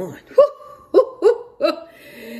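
A woman laughing in about four short, sharp bursts.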